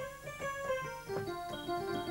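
Electronic keyboard played one note at a time, a short melodic run on a jazz scale with the notes stepping up and down in pitch.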